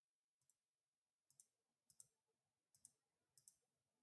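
Faint computer mouse clicks: about five quick double clicks spaced roughly half a second to a second apart.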